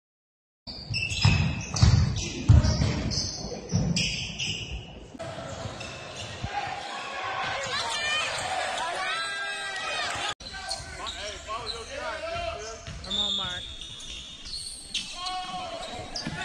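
Basketball bouncing on a hardwood gym floor, a run of heavy thumps in the first few seconds, with sneakers squeaking on the court. Voices of players and spectators carry on in the hall around it.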